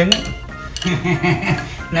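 Wooden chopsticks clinking and scraping against a stainless steel mixing bowl while beaten egg is stirred into flour by hand, with no mixer.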